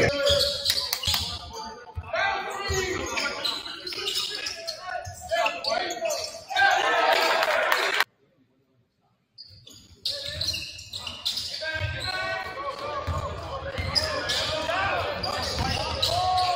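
A basketball bouncing on a hardwood gym floor during play, in a large echoing hall with voices around. The sound cuts out completely for about a second and a half just past the middle, then play resumes.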